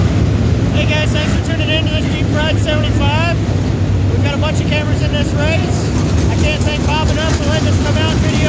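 Crate late model dirt race cars' engines running at high revs as the pack goes through the turn: a loud, steady low rumble with a high engine note that wavers up and down as the cars lift and get back on the throttle.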